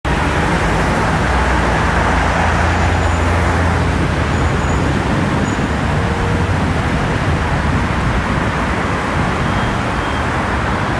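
City street traffic: cars driving past on a wide road, a steady wash of tyre and engine noise, with a deeper engine rumble swelling between about one and four seconds in.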